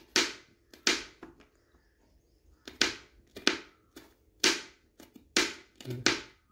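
Kitchen knife chopping garlic cloves on a cutting board: about seven sharp knocks of the blade hitting the board, coming at an uneven pace with a pause of over a second near the start.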